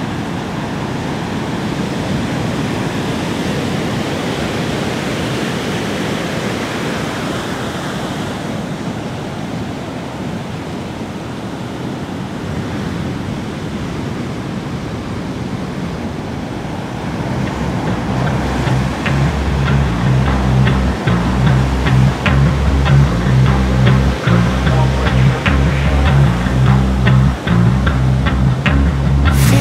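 A steady rush of rough sea waves and surf, a continuous wash of noise. About two-thirds of the way in, a music track comes in over it with a deep bass line and sharp ticking percussion, louder than the waves.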